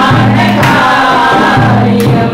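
Three women singing a Christian worship song together into microphones, over a low accompaniment line that sounds about once a second.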